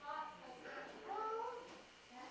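A cat meowing: a few drawn-out meows that waver and glide in pitch.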